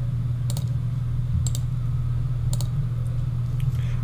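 Three sharp computer-mouse clicks about a second apart while zooming out of a map, over a steady low hum.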